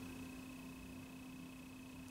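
Quiet room tone: faint hiss with a steady, unchanging electrical hum.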